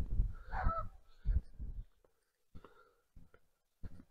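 A crow cawing once, about half a second in, over low thuds in the first two seconds; after that only a few faint clicks.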